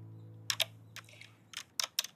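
Keystrokes on a compact keyboard docked with a tablet: about six sharp, irregular clicks of typing.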